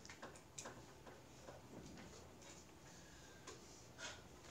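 Near silence with faint, irregular ticks and scratches of a pen writing on paper.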